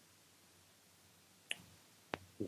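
Near silence: room tone, with one short sharp click about one and a half seconds in.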